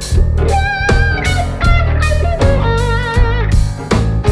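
Blues-funk instrumental band playing: an electric guitar plays a lead line of bent notes and long held notes with a wavering vibrato, over electric bass, drum kit and piano.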